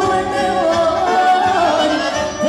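A woman singing Romanian Banat folk music with a live band of accordion and violin, amplified through a PA. The melody is sung in long, wavering held notes.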